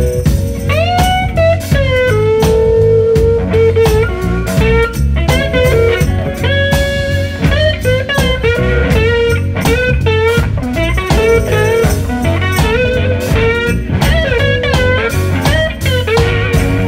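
Blues-rock band playing an instrumental break: an electric guitar plays a lead line with bent notes over drums and keyboard.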